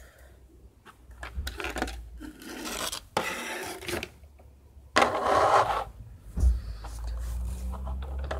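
Scraping and rubbing of a clear plastic packaging tray and foam pieces as a model railway coach is lifted out by hand, in several uneven bursts, with a dull knock about six seconds in as it is set down on the table.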